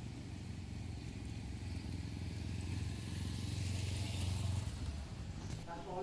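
A police escort motorcycle and a car drive up slowly with their engines running, the sound swelling to its loudest about four seconds in and then fading.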